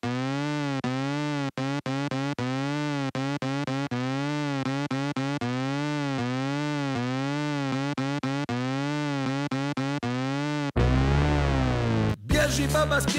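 Electronic siren sound: a buzzy, distorted tone wailing up and down about twice a second, broken by short dropouts. About eleven seconds in it drops lower and gets louder with a heavy bass.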